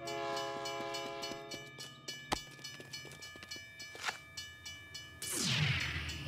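Cartoon train horn blowing one long, steady chord for about two seconds, then fading off, as a train approaches along the track. A couple of sharp clicks follow, and a falling whoosh near the end.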